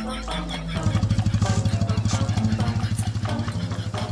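TVS Apache single-cylinder motorcycle engine starting a little under a second in and running with a fast, even pulse as it pulls away, over background music.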